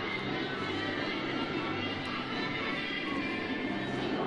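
Lively country-style string-band music with a banjo, played steadily throughout.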